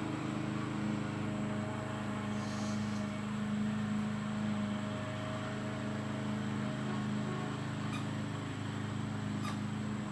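A steady low mechanical hum with a few constant tones, with two faint ticks near the end.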